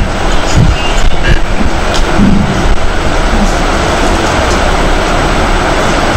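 Applause: many people clapping steadily at the same level throughout.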